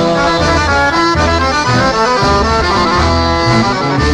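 Instrumental break in a Greek folk song: a quick melodic line played over a repeating bass pulse, with no singing.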